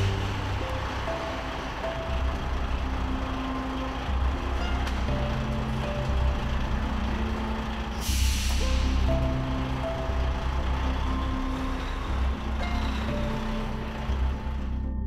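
Background music over a truck's diesel engine running, with a short hiss of air from the truck's air brakes about eight seconds in.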